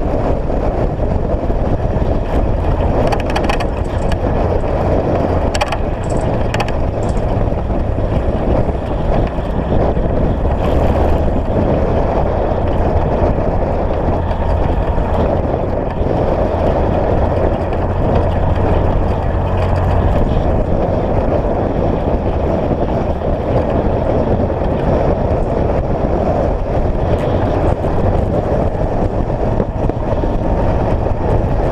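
UTV (side-by-side) engine and drivetrain running steadily at cruising speed on a smooth dirt road, mixed with tyre and road noise. A few brief clicks sound in the first third.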